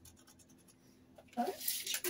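Pencil marking a rendered wall: a quick run of faint scratching strokes.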